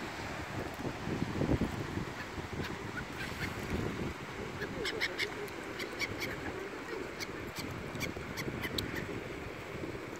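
Gulls giving many short, sharp calls over a pond, mostly in the middle of the stretch, above a steady low rumble of wind on the microphone.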